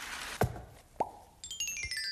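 Cartoon sound effects: a short hiss, then a sharp downward swoop, then a rising "bloop" plop, then a descending cascade of tinkling chime tones like a magic sparkle.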